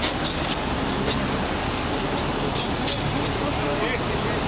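Shovels scraping and digging into gravel and dirt fill between rail tracks, with a few short sharp scrapes, over a steady rumble of vehicle noise.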